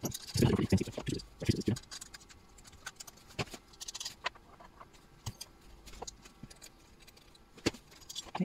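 Small metal screws being taken out by hand from a small home-built jet engine's casing: handling knocks in the first two seconds, then scattered light metallic clicks and rattles.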